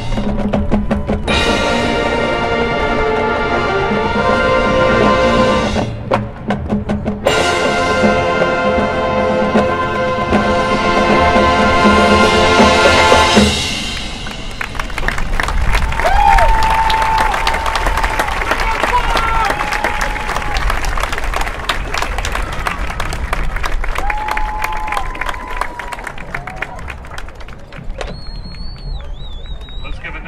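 Marching band playing brass and drums, with two short pauses, until the music ends about halfway through. After that the crowd in the stands applauds and cheers, with a few shouts and whistles.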